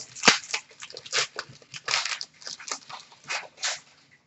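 Foil wrapper of a hockey card pack crinkling as it is torn open, with cards being handled: an irregular run of short rustles and crackles that stops shortly before the end.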